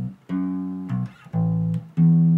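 Electric bass guitar playing a verse bass line in D, plucked single notes that each ring about half a second and stop, with short gaps between them.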